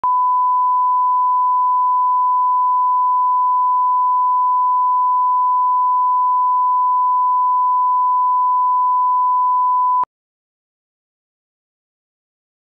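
Steady 1 kHz line-up test tone, the reference tone that goes with colour bars, cutting off suddenly about ten seconds in.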